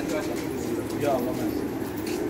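Many domestic pigeons cooing together, a low steady sound from the flock.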